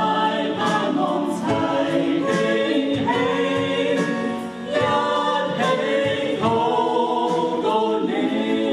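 A small mixed group of men and women singing a Mandarin Christian worship song together through microphones, holding long sustained notes, with a brief break between phrases about halfway through.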